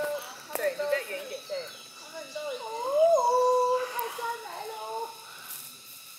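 Voices of several people calling out, with long drawn-out calls that rise and fall in pitch; one call is held for about a second, some three seconds in.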